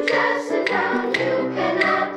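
Intermediate school chorus singing with accompaniment, the notes stepping from one to the next, with a sharp tick on about every beat, roughly twice a second.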